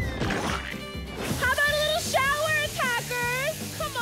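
Background music with a brief rush of splashing noise as foam sprays in the first second, then a high-pitched voice wailing or calling out over the music.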